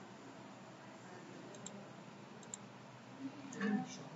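Two faint computer mouse clicks a little under a second apart, over a quiet background hiss, with a faint murmur of voice near the end.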